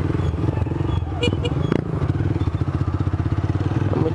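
Motorcycle engine running at steady low revs while riding, with one sharp click a little before the middle.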